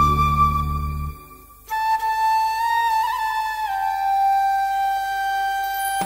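Vietnamese bamboo flute (sáo trúc) playing slow, long held notes in instrumental music. A high note sounds over a low accompaniment that drops out about a second in; after a short pause the flute holds a lower note that steps down a little partway through.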